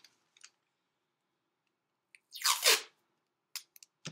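Masking tape ripped off the roll in one short, loud rip a little over halfway through, sliding lower in pitch as it goes, with a few faint clicks before and after.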